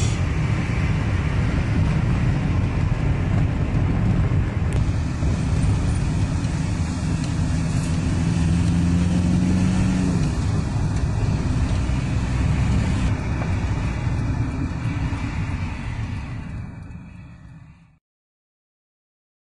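Steady low rumble of engine and tyres heard from inside a moving vehicle driving through city traffic, fading out near the end.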